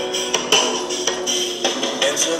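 Song with sharp tambourine-like percussion hits, played loudly through a car stereo system with sixteen 8-inch door speakers and heard from across a parking lot.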